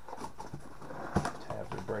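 Cardboard shipping box being handled and pried open by hand, with low scraping and rustling and one sharp knock a little over a second in.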